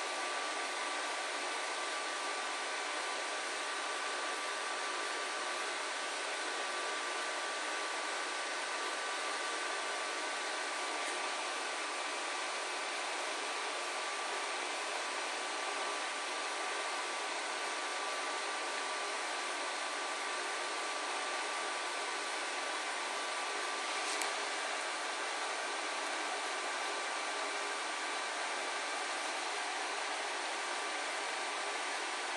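Steady background hiss with two faint, steady tones running through it, and a single faint tap about 24 seconds in.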